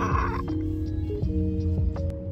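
Background music with slow, held chords over a steady bass. A short noisy burst sits over it in the first half second.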